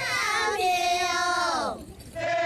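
Title-sequence music with a wordless high singing voice: several sliding tones at first, then a held note that falls away near the end.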